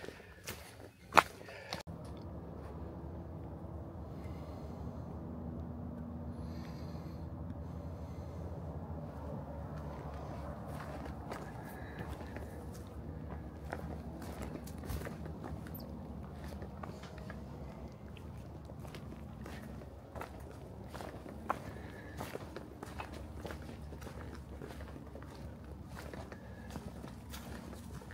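A hiker's footsteps on a rocky trail strewn with dry leaves: irregular scuffs, crunches and knocks of boots on stone, with a sharp knock about a second in.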